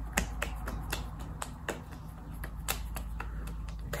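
Hands patting a liquid toner into facial skin: light, irregular slaps of palms and fingertips against the face, a few a second.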